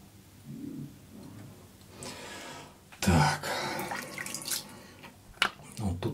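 A straight razor scraping through lathered stubble in a few short strokes, loudest about three seconds in, with a sharp click near the end.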